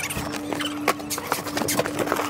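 Cardboard packages being handled on metal shelving: irregular knocks and scrapes several times a second as boxes are grabbed and slid, over a steady low hum.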